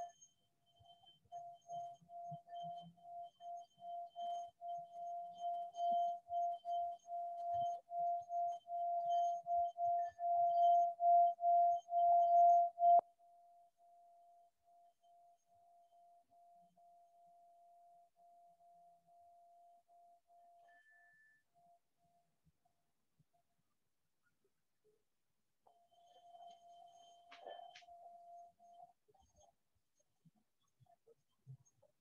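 A clear ringing tone, pulsing about two to three times a second and swelling louder for about twelve seconds, then dropping suddenly to a faint steady tone that fades out; it returns briefly near the end.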